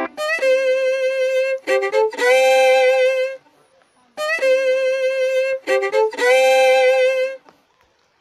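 Background music: a violin melody with vibrato on long held notes, played in two phrases with a short pause between them.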